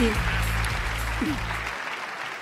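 Audience applauding over background music; the music cuts off suddenly near the end.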